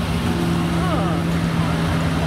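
Speedway saloon car's racing engine running at steady high revs as the car passes on the dirt track, holding one even note.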